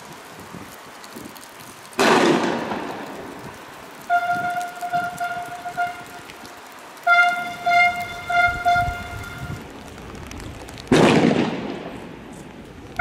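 Two loud bangs, each with a long echoing decay, about two seconds in and near the end. Between them a vehicle horn sounds in two spells of pulsing blasts.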